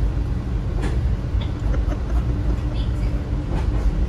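Steady low rumble of a moving Metra commuter train heard inside a passenger car, with a faint steady hum from about a second in and a few light knocks.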